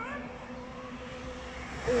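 Steady low hum over open-air background noise. Right at the end the level jumps sharply with a voice's exclamation.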